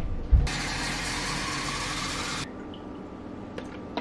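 Water streaming into a glass jar from a refrigerator's water dispenser: a steady hiss that starts about half a second in and cuts off suddenly about two seconds later. A footstep thuds at the very start.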